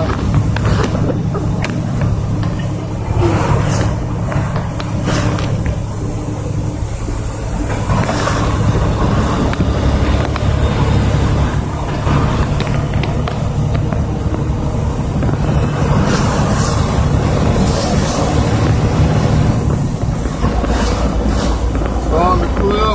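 Steady low engine rumble and road noise heard from inside a truck's cab on a rain-wet highway.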